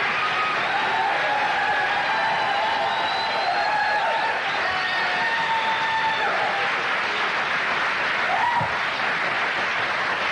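Studio audience applauding steadily, with faint music held underneath as the guest walks on.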